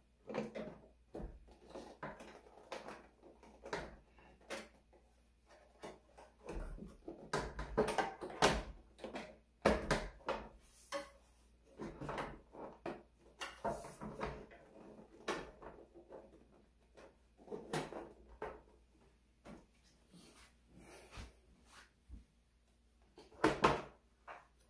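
Hard plastic parts of a Roomba S9 self-emptying base being handled and pressed into place by hand: irregular clicks, knocks and scrapes, with a louder cluster of knocks near the end.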